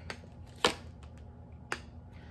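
Tarot cards being handled by hand: two sharp clicks about a second apart, with a few fainter ticks between.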